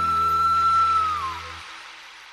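Closing bars of a Hindi devotional song. A flute holds one long high note over a sustained low chord, then bends down and stops about a second and a half in, as the chord cuts off and a reverberant tail fades away.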